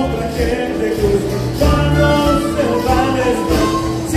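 A band playing morenada dance music: a melody over a regular, heavy bass beat.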